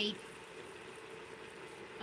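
Chicken breast and sauce simmering in a nonstick frying pan on an induction hob: a faint, steady bubbling with a steady low hum beneath it.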